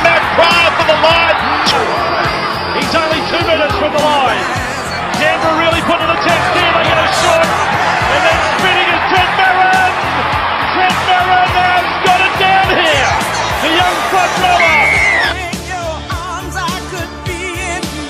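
Pop music with a singer over a steady beat; about fifteen seconds in the song turns quieter and changes character.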